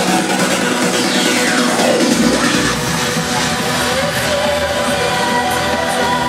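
Loud electronic trance music with a steady kick drum at about two beats a second. A falling sweep comes about a second in, then the kick drops out around two seconds in, leaving held synth chords into a breakdown.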